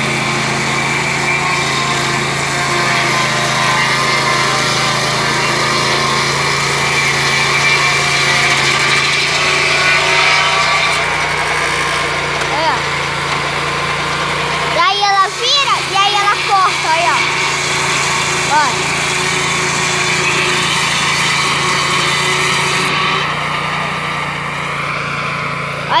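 Vectron portable sawmill's engine running steadily under a constant drone, the high hiss of the saw dropping away near the end. A person's voice is heard briefly about halfway through.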